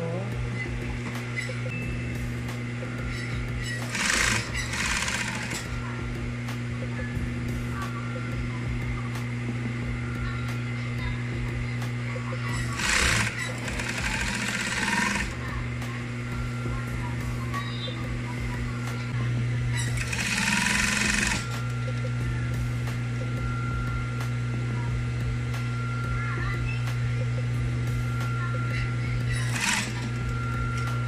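Industrial sewing machine sewing a folded curtain hem. Its motor hums steadily throughout, and the needle runs in four short bursts of rapid stitching, each one to two seconds long.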